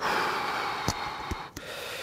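A man's long, forceful breath out through the mouth while straining at full isometric effort, fading to a quieter breath after about a second and a half. Two small clicks sound in the middle.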